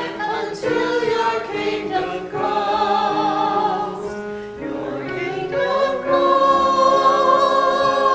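Small church choir of mixed men's and women's voices singing an anthem with keyboard accompaniment; it swells into a louder held chord about six seconds in.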